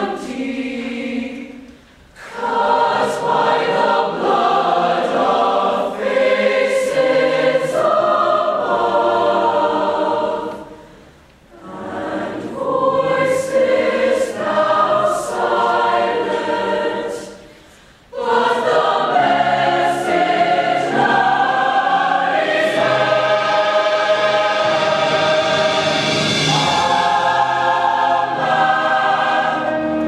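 Massed mixed choir singing a slow piece in sustained chords. The sound breaks off briefly between long phrases, about two, eleven and eighteen seconds in.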